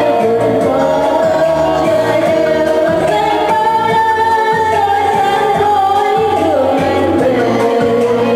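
A woman singing into a microphone with long held notes, over amplified backing music with a steady bass pulse.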